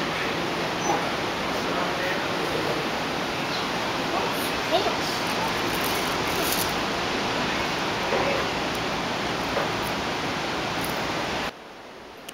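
Steady, loud hiss of background noise with a few faint voice sounds; it cuts off suddenly near the end.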